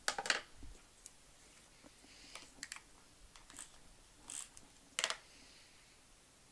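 Scissors trimming paper and the paper being handled: a handful of short, crisp snips and rustles spread out, the loudest about five seconds in.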